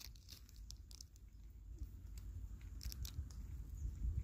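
Chipmunk gnawing a peanut held in its paws: faint, irregular crunching clicks, over a steady low rumble.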